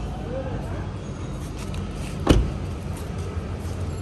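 A single sharp thump about halfway through, over a steady low hum.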